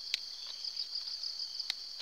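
Steady high-pitched insect chorus that pulses without a break. Two sharp clicks stand out, one just after the start and one near the end, from a blade trimming the leaves off a durian scion.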